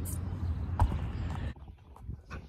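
Low rumble of wind on a phone microphone, with a single knock about a second in; it cuts off suddenly at about one and a half seconds, leaving only faint clicks of the phone being handled.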